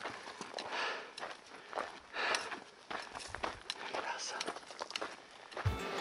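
Footsteps scuffing and crunching on a dirt trail with short clicks of trekking poles, at an uneven walking rhythm. Near the end, music comes in.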